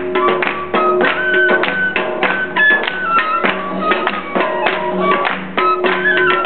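Live Balti folk music: a wind instrument plays a melody of held notes that step up and down, over a quick, steady percussion beat.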